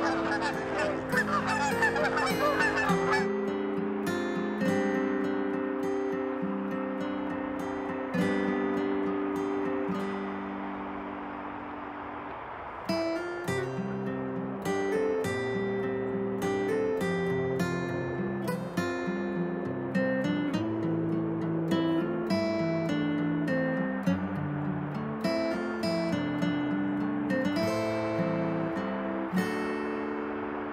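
Geese honking for the first three seconds or so, over instrumental background music with plucked-string notes.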